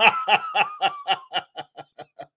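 A man laughing: a run of short, quick chuckles, about six a second, that grow quieter and die away near the end.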